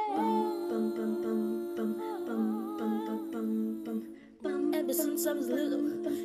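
A vocal ensemble singing wordless, humming harmonies a cappella: low held chords with a melody moving above them. The sound breaks off briefly about four seconds in, then resumes.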